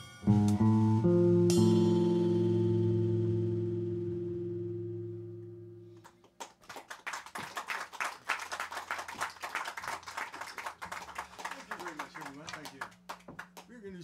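End of a tune by a live guitar trio: electric guitar and upright bass play a few quick notes, then land on a final chord that rings and fades away over about five seconds. Audience applause follows.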